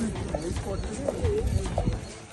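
People talking, with a few dull low thumps under the voices.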